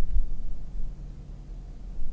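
Low steady rumble inside a parked truck's cab, with a few dull low thumps in the first half second.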